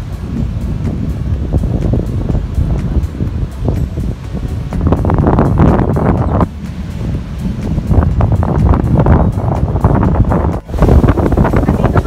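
Strong wind buffeting the microphone over the wash of ocean surf breaking on the reef.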